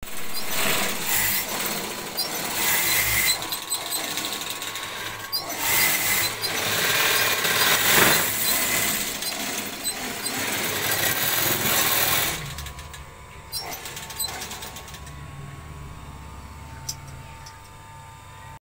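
Motor-driven sewing machines stitching fabric, a rapid mechanical clatter, loud for about the first twelve seconds, then quieter with a low hum and occasional clicks.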